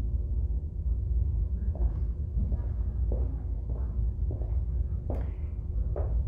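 Steady low room rumble, with a few faint knocks and rustles of handling and movement and one sharper click about five seconds in.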